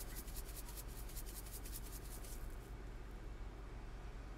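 Hand-twisted sea salt grinder grinding salt over a pot: a rapid run of small dry clicks for about two and a half seconds, then it stops.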